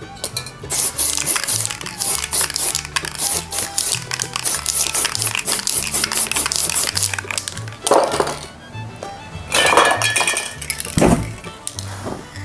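Background music with a steady bass line, over the hiss of aerosol spray-paint cans sprayed in short bursts. Near the end comes a short, loud rush as the sprayed paint flares up in flames.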